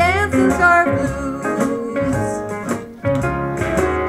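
A children's blues song playing, led by guitar, with a short sung phrase at the start and a brief dip in loudness about three seconds in.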